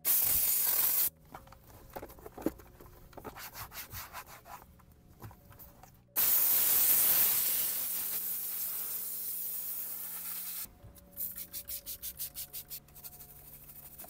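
Handheld steam cleaner hissing in two blasts: a short one at the start and a longer one of about four seconds from about six seconds in, fading off. Between and after them, scrubbing strokes on the car's centre console, quick and rhythmic near the end, at about six strokes a second.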